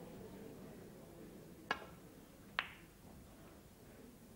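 Snooker break-off: the cue tip strikes the cue ball with a sharp click, and under a second later the cue ball clips the pack of reds with a second, ringing click.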